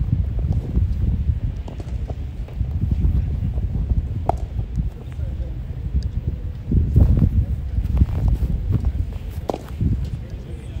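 Outdoor field sound dominated by wind rumbling and buffeting on the microphone, with faint voices and a few short sharp knocks.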